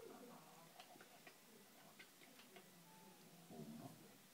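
Near silence with a few faint, irregular light clicks of fingers and small food pieces on a plastic tray, and a brief faint voice shortly before the end.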